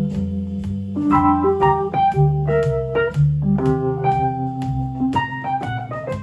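Wurlitzer electric piano playing jazz chords through a 'Rhythm Changes' progression, with low bass notes changing under the chords. A steady beat clicks along at about two beats a second, in keeping with 120 BPM.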